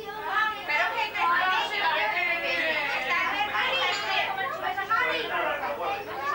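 Several people talking at once: lively, overlapping conversation around a table, with no single voice standing out.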